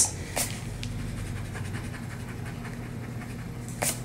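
A pencil eraser rubbing on drawing paper: quick, faint, scratchy strokes over a steady low hum, with a short sharp sound near the end.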